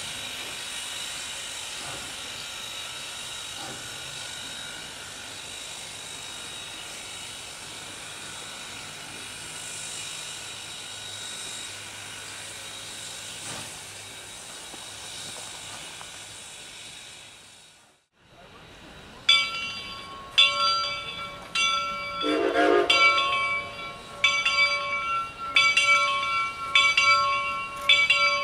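Reading & Northern 425, a 4-6-2 Pacific steam locomotive, standing with steam hissing steadily. After a sudden break, its Steel Reading six-chime steam whistle sounds a string of loud blasts, each a chord of several pitches.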